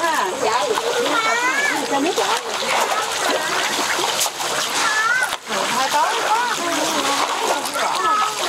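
Fish splashing at the surface of shallow muddy floodwater, a continuous splatter, with voices calling over it.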